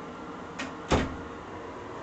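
Wooden interior door shut by its brass knob: a light click, then a louder thud as the door meets the frame about a second in.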